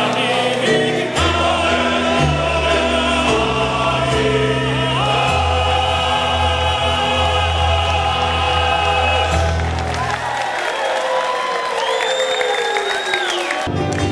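Men's choir singing in harmony, with a deep bass part and a long held chord. About ten seconds in, the low voices stop and higher sounds and crowd noise remain.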